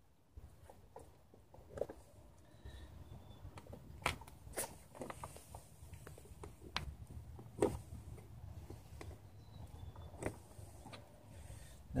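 Scattered sharp clicks and taps of a hand punch pressed into the plastic of a cold air intake tube and airbox, marking four spots to drill, over a faint low rumble.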